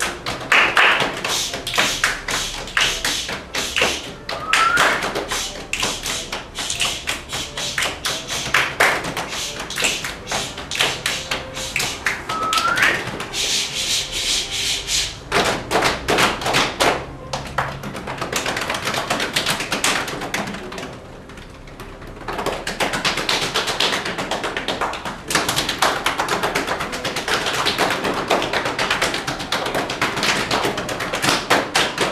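An ensemble of performers playing body percussion: rhythmic claps, hand slaps and taps in interlocking patterns. Two short rising squeaks come about four and twelve seconds in. The rhythm thins to a quieter stretch about two-thirds of the way through, then resumes at full strength.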